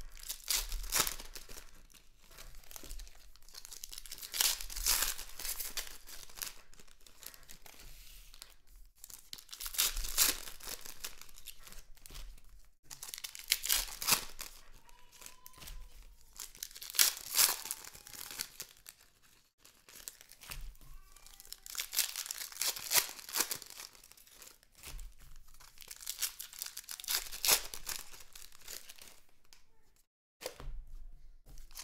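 Trading card packs being torn open by hand and their wrappers crinkled, with cards handled and slid against each other, in repeated bursts every few seconds.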